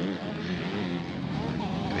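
Motocross motorcycle engines running and revving on the dirt track, a steady mechanical sound with faint rises and falls in pitch.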